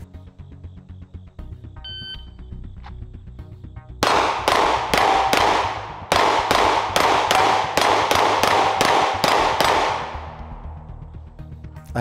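A shot timer beeps about two seconds in, and about two seconds after that a pistol fires a fast string of some fifteen shots over about six seconds, the last ones ringing off. Background music runs underneath.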